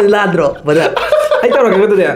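Man laughing, a chuckling laugh mixed with voice.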